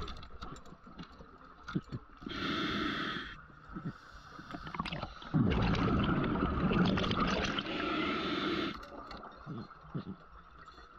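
A scuba diver breathing through a regulator underwater: a short hiss of inhalation about two and a half seconds in, then a long, louder rush of exhaled bubbles from about halfway through.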